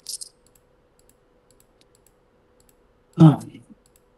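Brief rustle and a few faint clicks as wired earbuds are handled and fitted into the ear, picked up by the video-call microphone. About three seconds in, a man makes one short voiced sound, louder than the rest.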